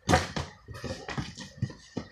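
A quick, irregular run of sharp knocks and taps from hard objects being handled on a countertop, about half a dozen in two seconds.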